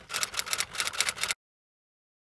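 Typewriter keystroke sound effect: a rapid run of sharp key clicks, several a second, that stops abruptly after about a second and a half.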